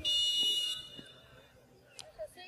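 Referee's whistle: one sharp, steady, high-pitched blast lasting under a second, stopping play for a foul.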